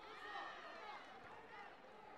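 Faint, indistinct voices calling out across a large, echoing sports hall, loudest in the first second.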